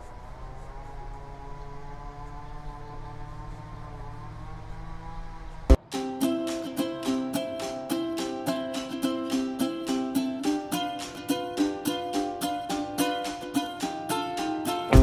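A faint steady hum, then a sudden cut a little under halfway in to background music: a plucked-string instrument picking a bright, evenly repeated melody.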